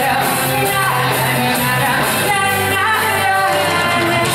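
A pop-rock band playing live: a woman singing lead over electric guitar, bass guitar and drums.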